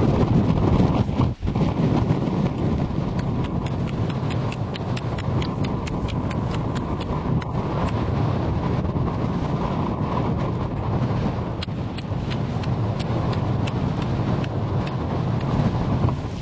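Axe chopping a hole in lake ice: a long run of sharp strikes at a fairly even pace, starting about two seconds in, under constant wind noise on the microphone.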